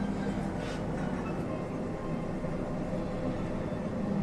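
Steady low mechanical hum and rumble, with a faint held tone, of a glass-walled hotel lift car in motion.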